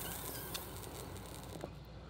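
Faint bubbling and gurgling of water in a glass dab rig as a hit is drawn through it, with a couple of small clicks.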